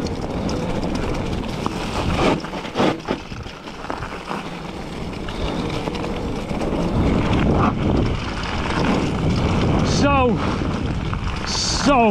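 Mountain bike riding fast down a rough dirt trail: steady tyre and trail noise with wind on the microphone, a couple of knocks from the bike about two to three seconds in, and a short falling shout from the rider about ten seconds in.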